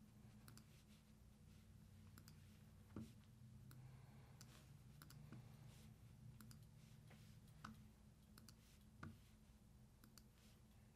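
Near silence with faint, irregular computer mouse clicks over a low steady room hum.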